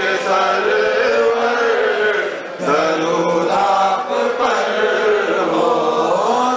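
Voices chanting an Islamic devotional hymn in long, drawn-out phrases, with a short break about two and a half seconds in before the chant resumes.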